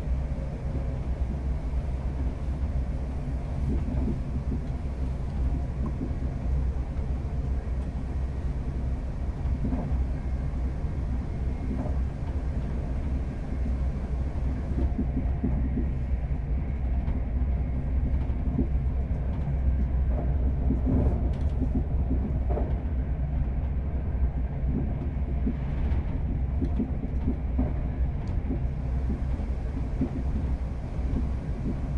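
Steady low rumble of a class 350 Desiro electric multiple unit on the move, heard from inside the passenger saloon, with a few light knocks from the track.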